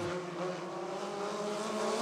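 A pack of midget race cars with four-cylinder engines running at speed around the track, a steady engine drone heard from a distance.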